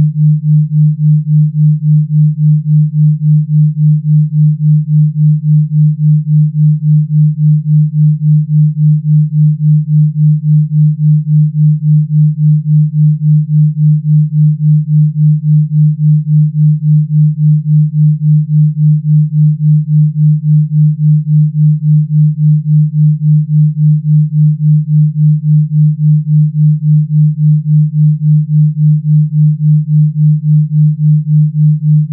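A steady, low, pure electronic tone: a Rife frequency played as a sine wave. Its loudness pulses evenly several times a second.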